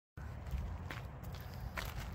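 Low rumble of a handheld phone microphone being moved, with a few faint footsteps.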